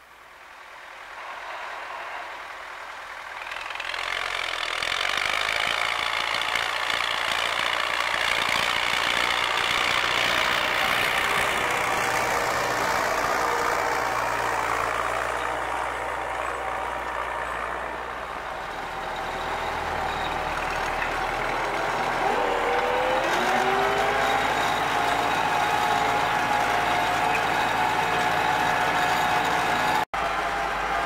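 An MTZ-80 tractor's D-240 diesel engine, heard from inside the cab, running steadily under load while it pulls a three-bottom plough through sod, with a whine above the engine note. The sound swells up over the first few seconds, and the note climbs a little past the two-thirds mark.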